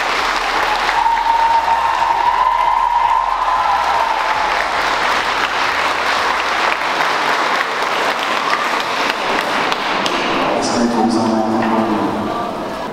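An audience applauding steadily, with a single high tone held for a few seconds about a second in. A voice comes in near the end as the applause thins.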